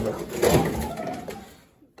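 The bottom freezer drawer of a Samsung French-door refrigerator is pulled open, sliding out on its rails. The sound starts loud about half a second in and dies away over about a second.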